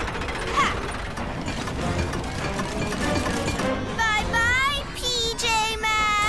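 Cartoon soundtrack: background action music under mechanical clattering effects for the speeding train, with a wavering pitched sound in the last two seconds.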